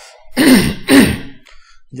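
A man clearing his throat twice in quick succession, two loud rasping bursts about half a second apart.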